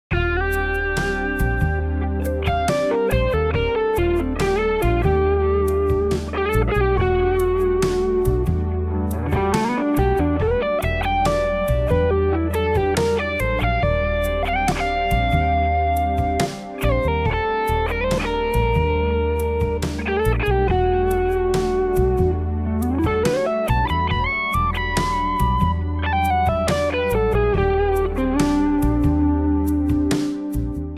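Semi-hollow electric guitar playing a single-note lead solo with string bends and slides, over a low bass accompaniment.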